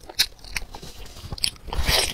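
Close-miked eating sounds of chicken coated in a thick yellow sauce: scattered sharp, wet mouth clicks, then a louder, longer bite into the meat near the end.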